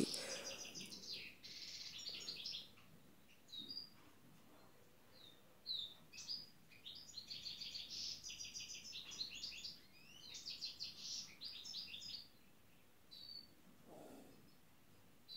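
Faint small songbird chirping and trilling: several bursts of rapid high repeated notes, with short single chirps between them.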